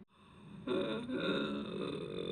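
A person's drawn-out, low, creaky vocal sound, without words, beginning just under a second in and holding steady in pitch.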